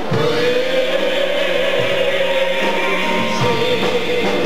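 Live gospel song: a woman's voice holds a long sung note, then another near the end, over a band with electric bass.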